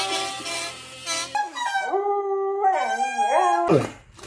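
A homemade "fart bag pipe", an inflated rubber glove with drinking-straw pipes squeezed like a bagpipe, giving a reedy, wavering wail. The pitch holds, drops lower about one and a half seconds in, then bends down and back up before cutting off near the end.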